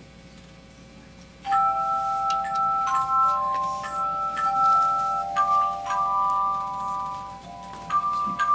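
A handchime choir starts playing a hymn tune about a second and a half in: several tubular handchimes ring sustained, overlapping notes that move from chord to chord every second or so.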